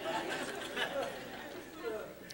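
Faint, off-microphone chatter of several people in a room, with voices calling out words.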